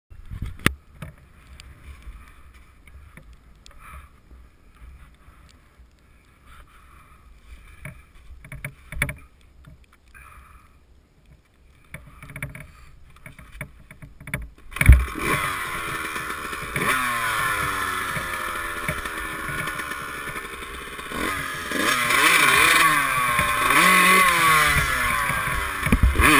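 Honda CR125's two-stroke single-cylinder engine starting with a sharp thump about fifteen seconds in, then running and being revved, its pitch rising and falling. Before it starts there are only scattered light knocks and clicks.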